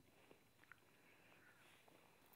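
Near silence: faint outdoor background with a couple of small faint clicks.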